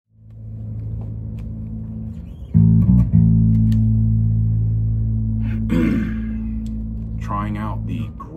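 Gretsch G2220 Junior Jet II short-scale electric bass played through a Fender Rumble 200 bass amp: a low note rings, then a louder note is plucked about two and a half seconds in, plucked again, and left to ring and slowly fade. A man's voice speaks briefly over the ringing note near the end.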